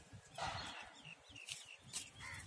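Birds calling: a harsh caw about half a second in, then a run of short, high, falling chirps, over a low rumble of handling.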